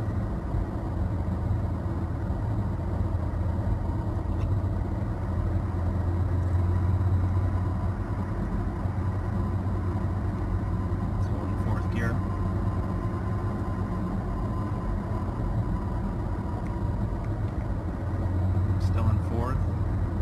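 Steady low drone of a Toyota Tacoma's 3.5L V6 and road noise heard inside the cab at about 40 mph, with a faint high whine through the middle stretch. The drone swells slightly a few seconds in and again near the end.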